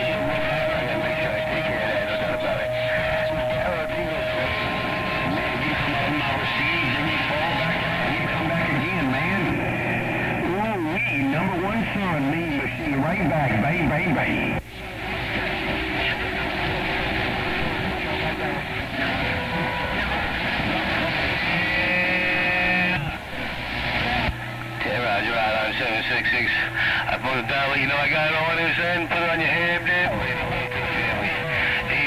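CB radio receiver audio from 27.025 MHz during skip: garbled, overlapping sideband voices from distant stations under static, with steady tones whistling across them. The audio briefly drops out about halfway through.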